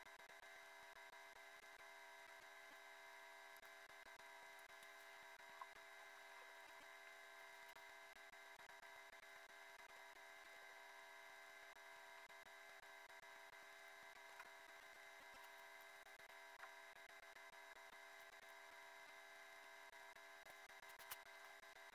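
Near silence: a faint, steady electronic hum of several fixed tones, with a few faint clicks.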